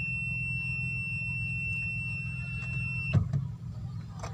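A car's steady electronic warning beep: one unbroken high-pitched tone that cuts off suddenly about three seconds in, followed by a click. The engine idles with a low hum throughout.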